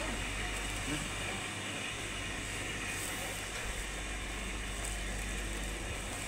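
Steady indoor market background noise: a constant low hum and hiss with faint voices in the distance.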